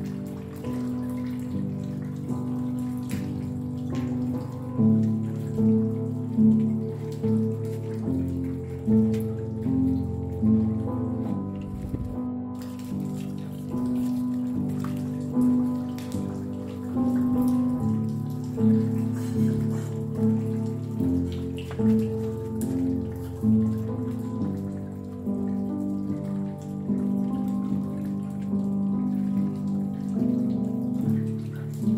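Slow, calm piano music, several notes held together and changing every second or so, over a steady sound of falling rain with scattered drops.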